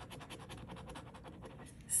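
A coin scratching the latex coating off a scratch-off lottery ticket in rapid back-and-forth strokes, about ten or more a second.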